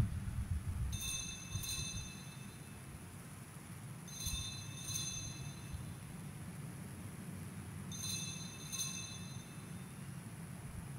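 Small altar bell rung at the elevation of the consecrated host, marking the consecration: three faint rings a few seconds apart, each a quick double stroke with a clear high ring, over a steady low hum.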